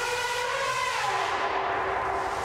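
African elephant trumpeting: one long call that rises slightly and then slowly falls in pitch.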